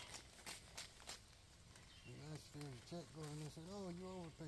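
A person's voice talking faintly, starting about two seconds in, after a few soft clicks.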